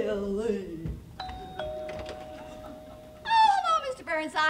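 Two-note doorbell chime, ding-dong: a higher note about a second in, then a lower note that rings on for about a second and a half.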